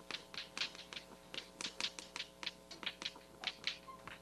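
Chalk writing on a blackboard: a rapid, irregular run of taps and short scratchy strokes as letters are written.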